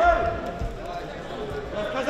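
Men's voices calling out across the hall, with a few low thuds in the first second.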